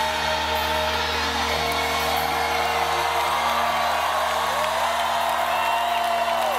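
A rock band's final chord rings out through the amplifiers, with guitar and bass notes held steady. Cheering and whoops from the crowd rise and fall over it.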